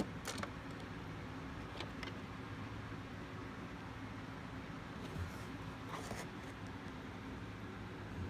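Cardboard LEGO boxes being handled, with a few short taps and rustles, over a steady low background hum.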